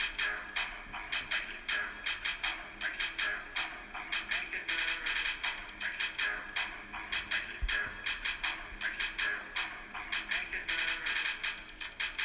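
Backing music of a song, with a fast, steady beat of sharp percussion hits over a sustained musical bed.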